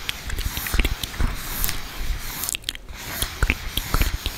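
Dry ASMR mouth sounds made right at the microphone: irregular wet-free clicks and pops of lips and tongue, several a second, with a short lull near the end.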